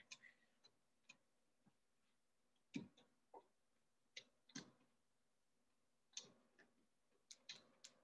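Near silence with a scattering of faint, short clicks and knocks at uneven intervals, the clearest a little under three seconds in.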